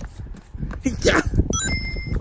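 A quick rising run of electronic beeps that settles on a held tone, a video-game-style point chime marking a scored hit, about one and a half seconds in; a voice calls "yeah" just before it.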